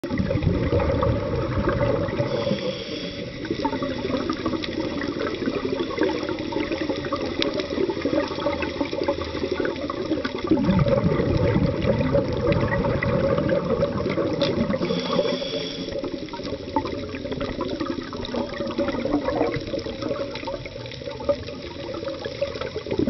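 Scuba divers' exhaled bubbles and regulator breathing heard underwater through a camera housing: a muffled, continuous gurgling rumble that swells and eases, with a brief higher hiss twice.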